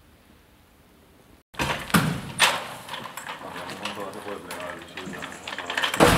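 Faint background hum for the first second and a half, then sharp knocks and clatter, two loud ones close together, with people talking in the background.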